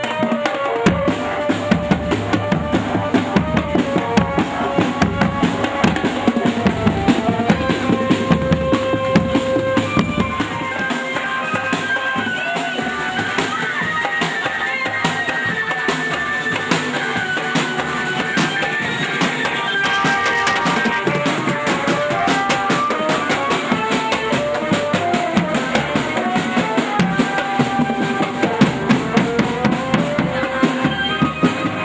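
Marching drum band of bass drums and snare drums playing a continuous beat, with a melody of held notes sounding above the drums.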